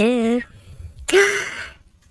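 A person's voice: the drawn-out, wavering end of a laugh, then a breathy sigh a little over a second in.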